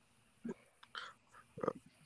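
A person's faint, brief vocal murmurs, three short throaty sounds under a second apart.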